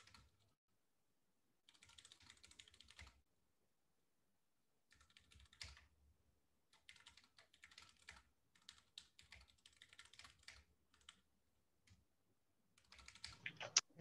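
Faint typing on a computer keyboard, in several short runs of keystrokes separated by pauses.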